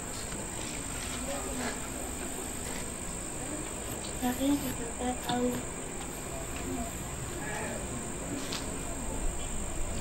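Steady background noise with a constant high-pitched buzzing trill. Faint, short bits of distant voices come through about four to five and a half seconds in.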